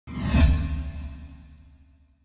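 A whoosh sound effect with a deep low boom under it, loudest about half a second in and dying away over the next second and a half.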